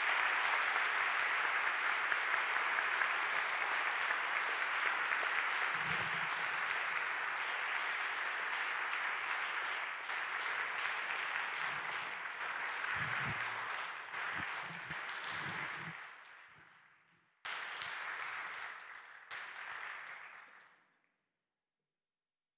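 Audience applauding, a steady dense clapping that begins to fade after about sixteen seconds, then comes back in two short, abruptly starting stretches before cutting off just before the end.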